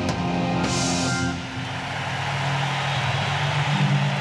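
Live rock band closing out a song: the playing stops with a cymbal crash about a second in, and low sustained electric guitar notes ring on after it.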